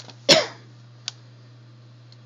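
A single short cough about a third of a second in, followed about a second in by a light click, over a steady low hum.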